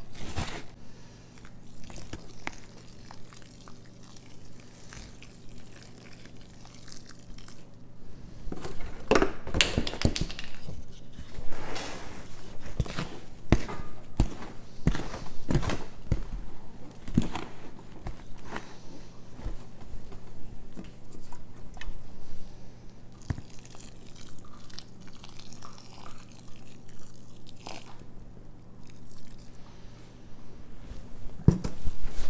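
Hands working damp peat moss and perlite seed-starting mix in a plastic tub, stirring and squeezing it: irregular crunching and rustling, busiest through the middle. The mix has just been wetted with boiling water and is still too dry to clump.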